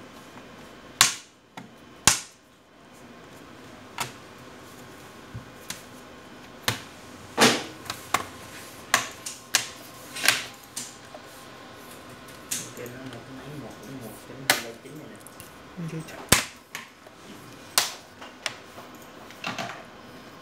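Sharp, irregular clicks and knocks as the plastic and metal bottom case of an HP 245 G8 laptop is pressed and snapped into place by hand. The laptop knocks on the desk as it is turned over.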